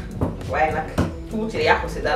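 A pestle knocking twice against a stone mortar while a seasoning paste is mixed, with a woman talking between the strokes.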